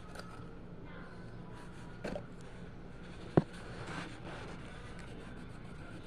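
Colored pencils and a colouring book being handled: a light knock about two seconds in and one sharp click just past the middle. After that comes faint scratching of pencil on paper.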